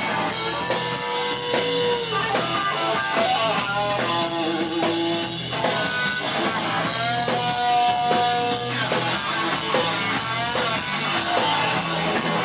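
Live punk rock band playing: electric guitars, bass and drum kit, with a few long held notes standing out over the rhythm.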